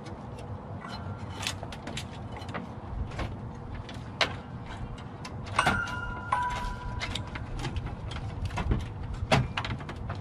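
Scattered clicks, knocks and rattles of metal parts being handled and worked loose inside a steel desktop computer case, with a brief metallic ring about six seconds in.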